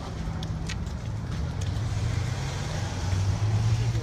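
City street traffic: a vehicle engine's low, steady hum with road noise, growing louder near the end as it passes close by.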